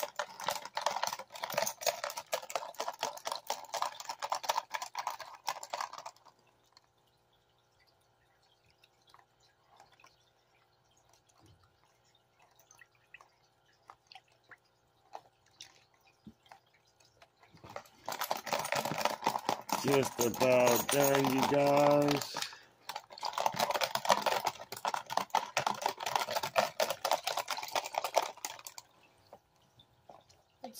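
Water sloshing and splashing in a plastic gold pan as it is swirled and dipped in a tub of muddy water, in two stretches: through the first six seconds, then again from about 18 seconds to near the end, with a quiet gap between. A brief pitched sound comes about 20 seconds in.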